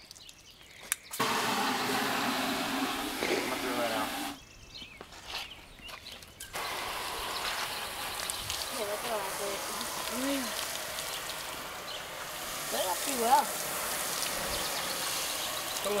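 Water running from a garden hose spray nozzle, splashing into a plastic bucket and onto a car, cutting out briefly about a second in and again for two seconds around the middle. Faint voices talk over it.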